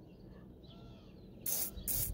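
Short hisses of a WD-40 aerosol can sprayed onto the shaft of an RV air-conditioner fan motor that hummed but would not spin because of dirt: two quick bursts starting about a second and a half in.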